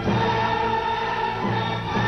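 Orchestra and choir performing classical choral music: full sustained chords that shift every half second or so.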